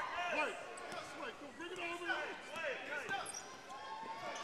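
Live court sound from a basketball game on a hardwood gym floor: a basketball being dribbled, with many short squeaks from sneakers on the floor and faint voices in the gym.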